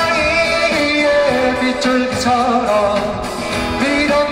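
A man singing a Korean pop song live into a microphone while strumming an acoustic guitar, backed by a band, the voice holding long notes over the accompaniment.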